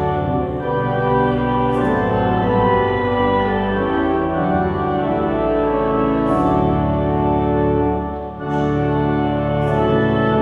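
Church organ playing the opening hymn in sustained chords, with a brief lift between phrases about eight seconds in.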